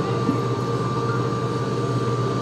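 Excavator's engine running steadily at a constant pitch, with a thin steady whine above it, as the machine holds its grab nearly still.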